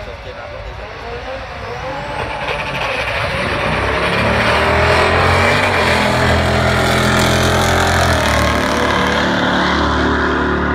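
Two cars launching in a drag race and accelerating hard down the strip. Their engines grow louder over the first few seconds, then run loud at high revs, with a change in the engine note near the end.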